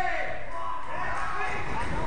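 Spectators' voices shouting and yelling, over dull thuds of wrestlers' bodies and feet on the ring canvas.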